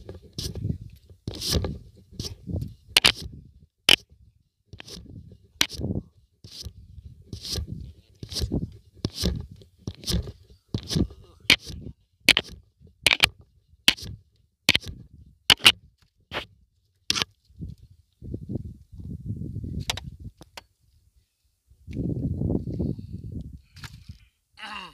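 A quick, irregular series of sharp clicks and scrapes close to the microphone, about one or two a second, over a low gusty rumble of wind on the microphone that swells near the end.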